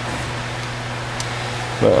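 Steady low hum with an even hiss, like a fan or room ventilation, and a faint click a little over a second in.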